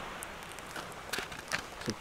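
Breezy seaside ambience: steady wind noise with faint waves on the shore, and a few light taps in the second half.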